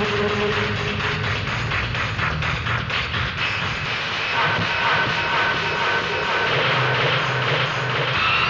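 Film soundtrack music for a chase: a dense, rumbling drone with fast regular beats in the first half, then held high notes from about four seconds in.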